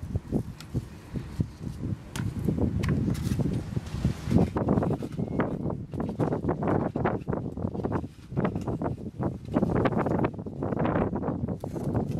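Hands working potting soil and thin clear plastic cups close to the microphone: irregular rustling, crinkling and scraping, busier from about four seconds in.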